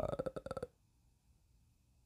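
A man's drawn-out, creaky 'uh' of hesitation, ending under a second in.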